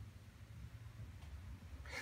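Quiet room tone with a low steady hum, and a short breath drawn near the end.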